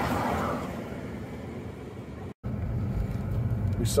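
A car passing close by, its engine and tyre noise swelling and fading over the first second or so. A brief dropout a little over two seconds in, then steady low road rumble from inside a moving car.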